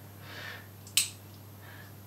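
A single sharp click about a second in as the stethoscope's metal binaurals are bent and handled, over a low steady hum.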